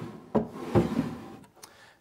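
Wooden tray sliding across the top edges of a wooden steamer trunk: a wood-on-wood rub with two knocks in the first second.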